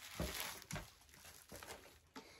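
Faint crinkling and rustling of a plastic bubble-wrap sheet being slid across a table and pulled away, with a few light knocks.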